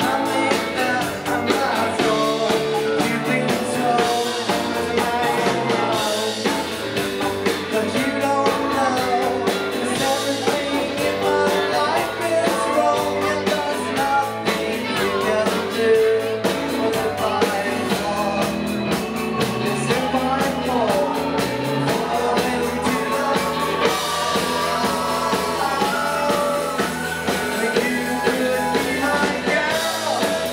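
A live sixties-style garage rock band playing a song at a steady driving beat: electric guitars, bass, drum kit and keyboard, with a male voice singing.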